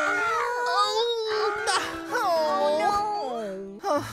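A cartoon character's wordless voice sounds, rising and falling in pitch, over background music.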